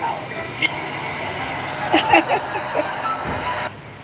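A video clip playing through a phone speaker: steady background noise with a short burst of speech about two seconds in, the noise cutting off suddenly near the end.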